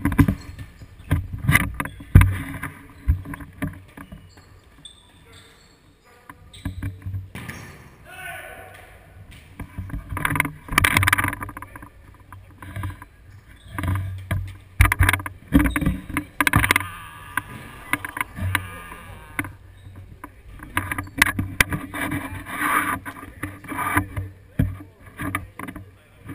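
Futsal play on an indoor court heard through a GoPro action camera moving with the players: a steady run of short knocks from footsteps, ball kicks and the camera's own jolts, with players calling out now and then.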